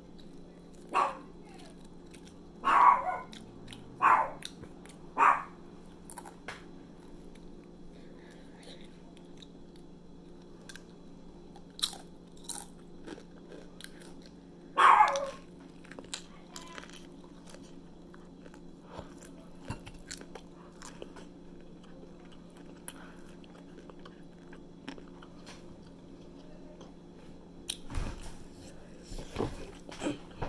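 Close-up eating sounds: biting into and chewing a cheesy pepperoni roll and crunching Doritos, with a handful of short, louder sounds in the first few seconds and again about fifteen seconds in.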